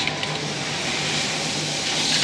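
Computer-controlled pattern sewing machine running steadily, its needle stitching through a quilted workpiece held in a clear plastic template.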